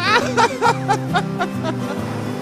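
Cartoon laughter: a quick run of short 'heh' syllables, about four a second, that start high and fade out after about a second and a half, over light background music.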